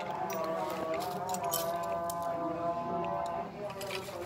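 A person's voice in the background with long, drawn-out pitched notes, and a few faint small clicks.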